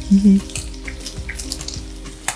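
Shredded chicken frying in rendered lard in a skillet: a steady sizzle with scattered small crackles. A short hummed "mm" near the start.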